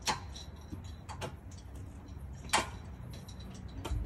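A few short, sharp clicks, about a second or so apart, the first and third louder than the others, over a faint steady low rumble.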